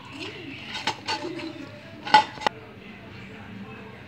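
Hands kneading dough in a steel bowl, with several sharp knocks of the hand and dough against the metal, the loudest about two seconds in.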